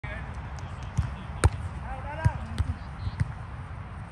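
Volleyball being struck by players' hands and forearms during a rally on grass: a series of sharp smacks, the loudest about a second and a half in, with a short shout from a player around two seconds.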